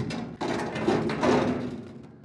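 A hollow welded sheet-aluminium boat console being dragged and turned on concrete: a sustained scraping rumble with the metal box ringing faintly, fading off near the end.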